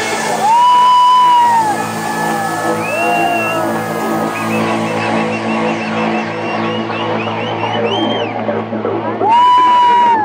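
Electronic dance music played loud over a club sound system, with crowd whoops over it. Two loud, held high tones stand out, one about half a second in and one near the end.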